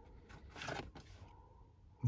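A footstep crunching in dry leaf litter, heard once, briefly, about two-thirds of a second in; otherwise faint.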